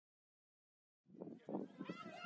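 Dead silence for about a second, then the live sound of a football match cuts in: players' voices calling out across the pitch over open-air field noise.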